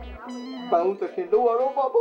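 A person wailing and sobbing in grief, the voice sliding up and down in drawn-out cries that start a little under a second in, over background music.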